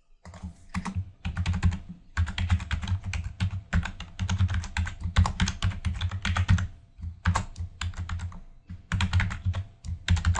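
Computer keyboard typing: quick runs of keystrokes broken by a few short pauses.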